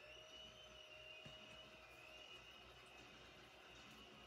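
Near silence: room tone with a faint, steady high-pitched whine.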